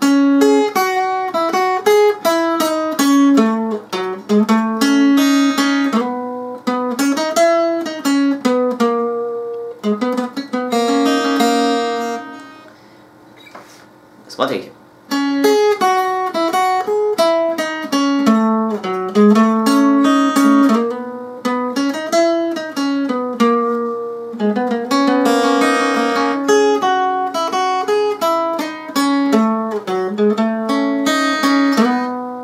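Acoustic guitar playing a melodic lead line, the song's solo intro, note by note. The playing falls quiet briefly a little before halfway, then picks up again.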